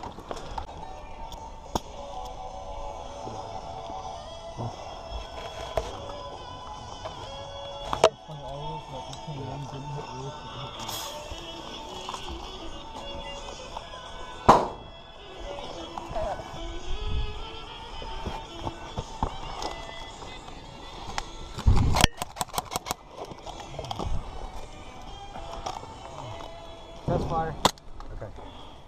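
Background music with faint voices under it, broken by a few sharp cracks: one about eight seconds in, another near the middle, and a quick string of cracks about twenty-two seconds in.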